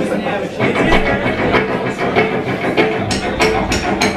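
A live ska-punk band playing the opening of a song: held guitar and bass notes under voices, then a quick run of sharp drum hits in the last second, leading the full band in.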